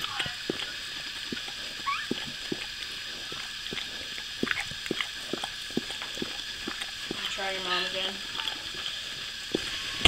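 Mother dog licking her newborn puppy: irregular wet clicking and smacking sounds. A brief rising squeak comes about two seconds in, and a short low voice-like sound near eight seconds.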